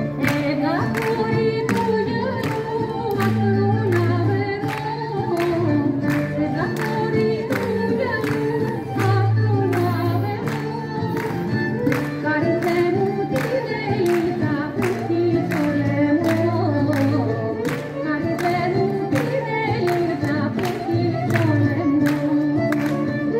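Traditional folk dance song with singing over instruments, a steady beat and a held bass line.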